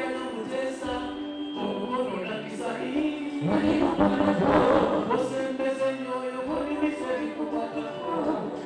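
A male lead vocalist singing live into a microphone over a backing band, amplified through the sound system. The music swells louder about halfway through.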